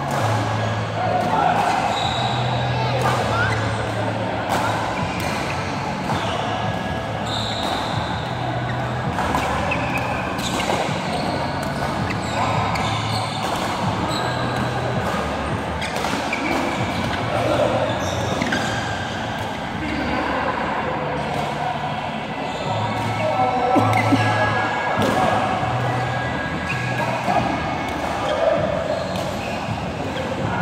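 Badminton rackets striking a shuttlecock in repeated sharp hits during rallies, echoing in a large sports hall, with players' voices throughout.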